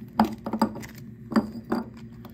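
Plastic lamp socket and coiled cord knocking and clinking against the inside of a small metal bowl as they are pulled out, about five sharp knocks, some with a brief ring.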